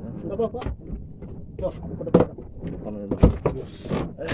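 Two sharp knocks on a small wooden boat, about two seconds and three seconds in, the loudest sounds here, over indistinct talking.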